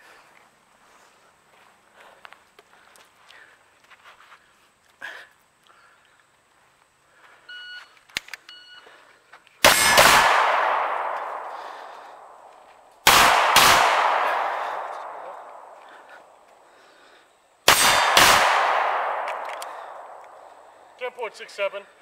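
A shot-timer beep, then three pistol double taps about a second and a half later, then about 3.5 s and 4.5 s apart, each pair of shots followed by a long ringing echo that fades over about three seconds.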